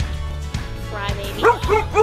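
A dog barking in a quick run of short, high yips in the second half, about four in half a second, over steady background music.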